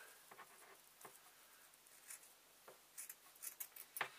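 Faint, irregular snips of scissors cutting through layered fabric with wadding between, a few close together near the end.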